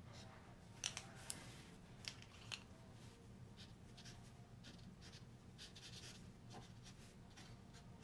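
Faint scratching and rustling of hands working a gold paint pen over artwork, with a few sharp little clicks about one second and two and a half seconds in, over a low steady hum.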